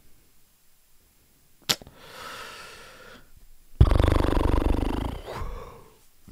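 A person's voice making non-word sounds: a faint breathy exhale, then a long, low, creaky groan while puzzling over a guessing-game clue. A single sharp click comes before them, a little under two seconds in.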